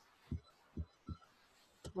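Three faint, soft low thumps, then a short sharp click near the end.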